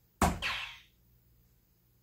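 A soft-tip dart hits a Granboard electronic dartboard: one sharp plastic clack that fades over about half a second.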